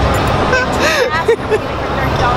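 Hubbub of a crowded exhibition hall: a steady din of many voices over a low rumble, with a few short snatches of a nearby voice around the middle.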